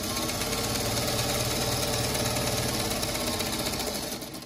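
Singer Featherweight sewing machine running at a steady speed, stitching a seam across fabric squares, then stopping near the end.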